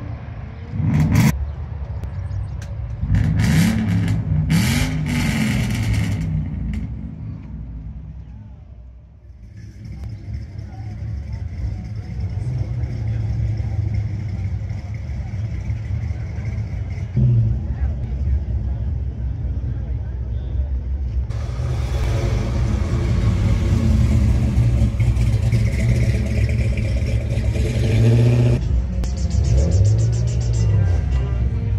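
A V8 car engine revving in a few quick blips, then a C5 Corvette's V8 idling steadily, growing louder about two-thirds of the way through.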